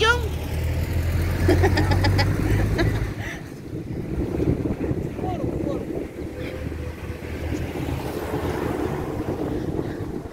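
Wind buffeting the phone's microphone outdoors, a low rumble that drops away about three seconds in and comes back for the last few seconds.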